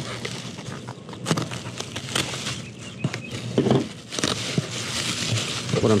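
Bubble wrap and plastic packing crinkling and rustling in irregular crackles as hands dig through it inside a cardboard box.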